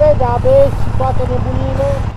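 A motorcycle engine idling, a low steady rumble, under a man's voice talking.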